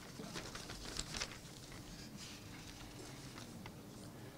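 Sheets of paper rustling and being shuffled in the hands close to a table microphone: a string of soft, short crackles, over a faint steady room hum.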